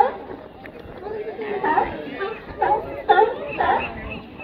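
California sea lions barking, a run of short, evenly spaced barks about half a second apart in the second half, territorial barking between animals on the floats.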